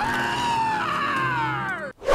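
A cartoon dog's long high scream that starts suddenly, bends briefly upward, then slides steadily down in pitch and cuts off just before the end.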